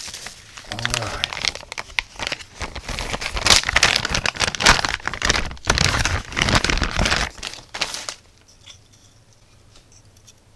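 Clear plastic zip-lock bag crinkling and rustling with sharp crackles as a circuit board is worked out of it by hand, stopping about eight seconds in.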